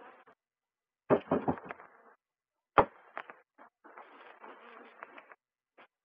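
Knocks and clunks of beekeeping equipment being handled close to the microphone: a cluster of knocks about a second in, then one sharp knock, the loudest, a little before halfway, followed by a few lighter clicks. A faint buzz of honeybees lies between them.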